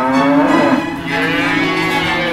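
Dairy cows mooing, several long overlapping calls, with orchestral string music underneath.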